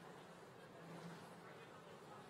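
Near silence: the room tone of a large hall, with a faint low hum.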